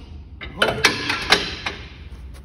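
A camper trailer's lid fitting being released by hand: a quick run of five or so sharp clicks and knocks, the loudest about a second in.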